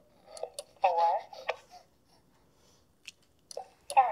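A child's voice counting "four" about a second in, with a few light clicks scattered before and after the word.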